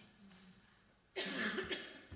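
A person coughing once, about a second in: a short, harsh burst lasting under a second, after a near-silent pause.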